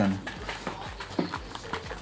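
A quick, irregular run of light clicks and knocks.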